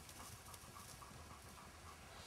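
Near silence: faint open-air ambience with a faint, quick, even ticking.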